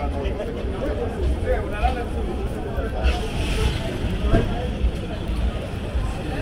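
Busy city street: several passers-by talking over one another, over a steady low rumble of traffic, with a brief hiss about three seconds in.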